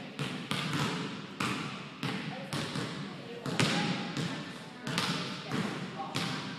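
A basketball bouncing on a hardwood gym floor: a run of irregularly spaced thuds, each with a hall echo.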